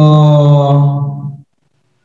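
A man's voice holding one long hesitation syllable, a drawn-out 'so…', on a steady pitch for about a second and a half before it stops.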